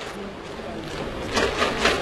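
Baseball stadium crowd noise between pitches, a wash of voices that grows louder with a couple of brief surges near the end.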